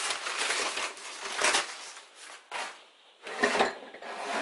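Crumpled old wrapping paper being crinkled and rustled by hand, in several bursts, with a short handling knock about three and a half seconds in.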